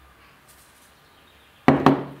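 Two quick knocks of hard kitchenware, something set down or tapped against a hard surface, with a short ring, near the end.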